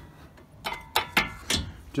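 Brake caliper being slid back on over new brake pads onto its bracket, giving a quick series of about five metal clicks and knocks in the second half.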